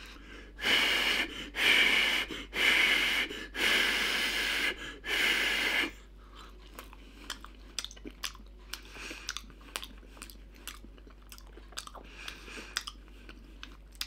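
A man blowing about five puffs of breath on a hot potato ball held at his mouth to cool it, each puff lasting under a second. Then quiet chewing with small wet clicks for the remaining time.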